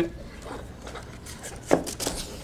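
Faint handling sounds, then a single sharp knock near the end as a small mitred wooden box is set down on a metal table saw top.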